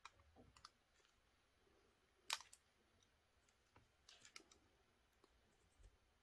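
Faint, sparse clicks and small scrapes of a knife blade trimming the hard plastic of a power-tool battery housing, with one louder click a little over two seconds in and a few small ones near the end.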